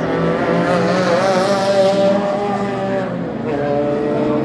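Racing cars' engines running hard as they pass along the circuit, the engine note wavering up and down, loudest a second or two in. Near the end another car's engine note rises and then holds steady.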